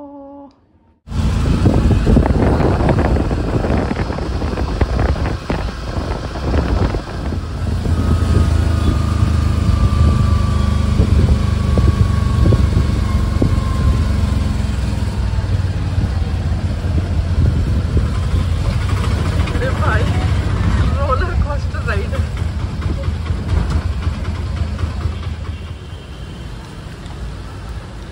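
Street traffic noise: vehicles running past with a heavy low rumble, starting abruptly about a second in. A faint tone slowly falls in pitch between about 8 and 14 seconds in.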